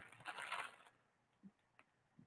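Near silence, broken near the start by a faint, brief rustle of a fabric face mask being handled.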